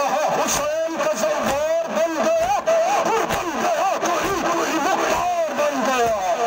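A man chanting a nawha, a Shia lament for Karbala, in long wavering melodic phrases, over the noise of a crowd of mourners. A few sharp slaps, typical of chest-beating (matam), cut through at irregular moments.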